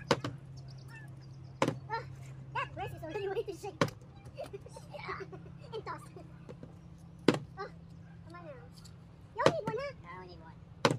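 A plastic drink bottle partly filled with water is flipped and lands or falls on a folding tabletop, giving a sharp knock each time, about five times and spaced unevenly.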